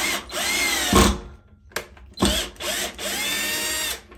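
Cordless drill-driver driving a screw into a pilot hole in a tiled wall, its motor whine rising as it spins up. It runs for about a second, stops, gives a brief blip, then runs again steadily for about a second and a half, stopping just before the end.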